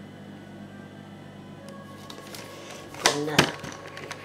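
Steady low room hum, then a few loud knocks and clatter about three seconds in: handling noise as the handheld camera is picked up and turned around.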